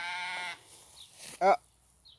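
Sheep bleating: one held bleat at the start and a short one about a second and a half in.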